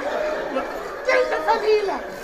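Men's voices chattering and laughing, louder about a second in.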